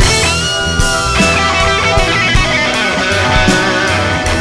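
A rock band playing an instrumental passage with no vocals: a sustained, bending electric guitar lead over bass and drums.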